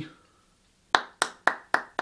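One person clapping their hands five times in quick, even succession, about four claps a second, starting about a second in: a one-man round of applause.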